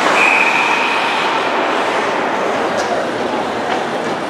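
Ice hockey referee's whistle blowing one steady high note for about a second near the start, stopping play. Underneath is a constant wash of arena noise from the crowd and skates on the ice.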